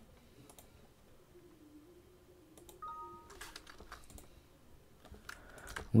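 Faint, sparse clicking at a computer, with a cluster of louder clicks about three and a half seconds in. Just before them comes a short electronic beep of two steady tones lasting about half a second.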